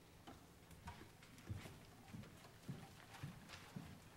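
Soft footsteps on a wooden stage floor, irregular knocks about two a second.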